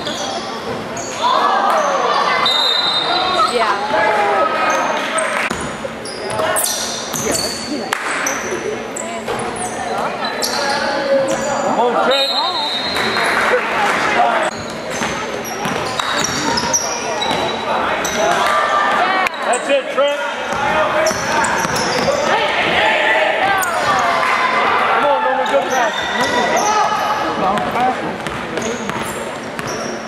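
Basketball game sounds in a gymnasium: the ball bouncing repeatedly on the hardwood court among shouting from players and spectators.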